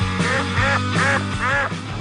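A quick run of about six duck quacks, used as a comic sound effect over background music.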